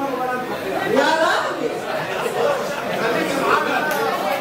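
Several people talking and laughing over one another at once, indistinct chatter in a large hall.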